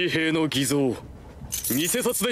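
Speech: a character's voice from the anime speaking Japanese dialogue, two phrases with a short pause about a second in.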